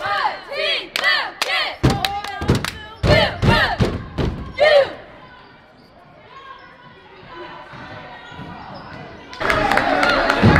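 A squad of girls shouting a stomp-style cheer in unison, with sharp stomps and claps on the beat. The cheer stops about five seconds in. After that there is gym crowd chatter, which gets louder near the end.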